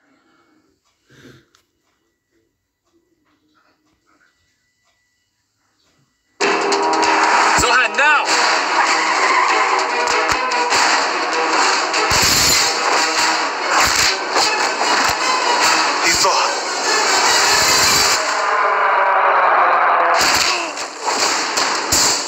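Near silence for about six seconds, then a film trailer's soundtrack starts suddenly: loud music with action sound effects, including heavy hits about twelve and eighteen seconds in.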